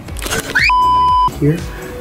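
A single steady electronic bleep lasting about half a second, edited into the speech in the manner of a censor bleep over a spoken word.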